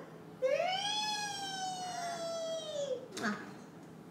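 A baby's long, high-pitched vocal squeal lasting about two and a half seconds, rising in pitch and then slowly falling, followed by a short "ah" near the end.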